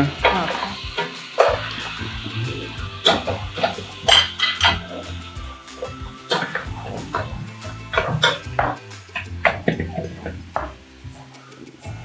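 Wooden spoon stirring in a metal pot on the stove, knocking and scraping against the pot's sides and rim in irregular clicks, over background music.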